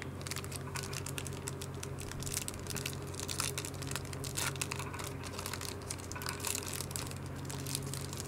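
Candy bar wrapper crinkling as it is opened by hand: a continuous run of small crackles and clicks.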